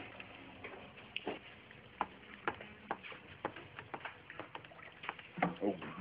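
A scatter of short, light clicks and taps at irregular intervals, roughly one or two a second, over a quiet room background.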